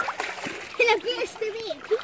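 Water splashing as a child swims in lake water, with a child's wordless voice over it in the second half.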